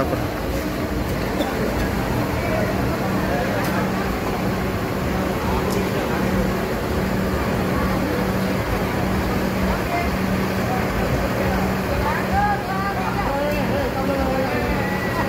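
Steady low hum of a large coach's engine idling, under people chatting nearby.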